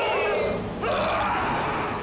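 Soundtrack of an inserted movie clip: a sustained noisy wash with a thin, high wavering tone held through it, dipping briefly just after halfway.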